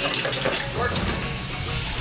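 Lunch-counter background noise: a steady hiss with indistinct voices and faint music underneath.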